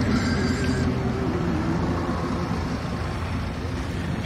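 Car driving past on a street, with engine and tyre noise that slowly fades.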